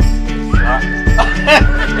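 Music with a steady beat of about two hits a second under a long held high note, with a gliding pitched line near the end.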